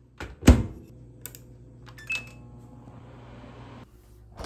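Microwave oven door shut with a loud thunk, a few button clicks and a short beep, then the microwave running with a steady low hum that stops just before the end.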